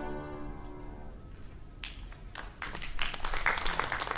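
A held chord from string orchestra and piano fades away over the first second. About two seconds in, scattered hand claps start and thicken into light applause from a small audience.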